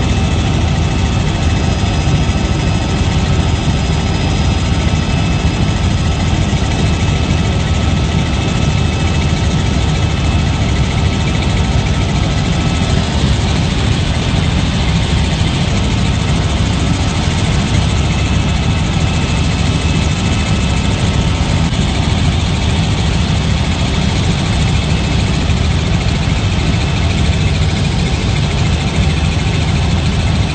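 Helicopter in flight, heard from inside the cabin: a loud, steady drone of engine and rotor with a few faint, steady high whines above it.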